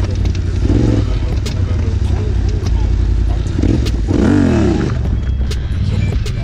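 Yamaha Raptor quad's engine running and revving under throttle, pitch rising and falling as the machine is ridden into a wheelie, with scattered clicks and clatter.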